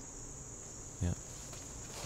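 Steady, high-pitched chirring of insects, running on without a break.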